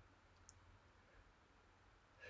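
Near silence: faint room tone with a low hum and one tiny click about half a second in.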